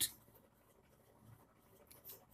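Faint sound of a pen writing on notebook paper, a few soft strokes.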